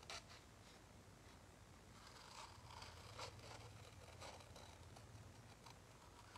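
Large scissors slowly cutting through a cardstock print: a few faint, uneven snips and paper scrapes.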